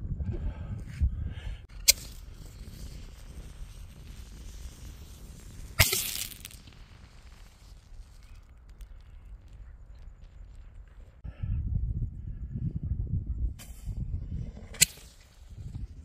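Consumer aerial fireworks going off. A sharp bang comes about two seconds in, a louder bang with a short hiss after it near six seconds, and another bang near the end, with a low rumble in between.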